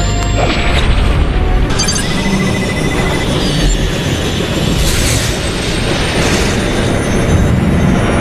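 Film sound effects of a booming energy blast and a continuous deep rumble, mixed with music.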